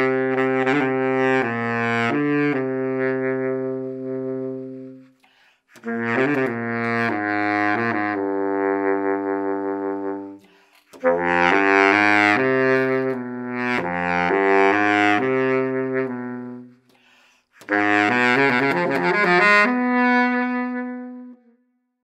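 Yamaha YBS-480 baritone saxophone played solo: four short melodic phrases with brief pauses between them, the last ending on a long held note that fades out.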